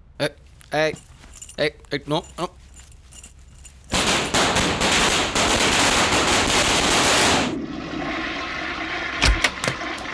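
A toilet flushing: a sudden loud rush of water for about three and a half seconds, falling away to a quieter steady trickle as the cistern refills. Near the end come a few sharp latch clicks and a heavy thump as a wooden door is opened.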